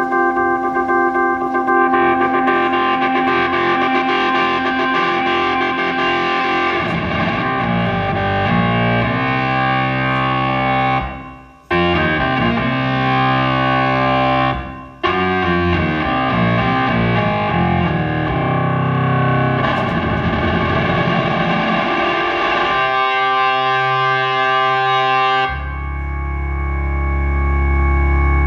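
Overdriven drawbar-style organ from a Roland VK-7 playing solo. It starts with long held chords, and lower moving notes join them about a quarter of the way in. The sound drops out suddenly twice, briefly, near the middle.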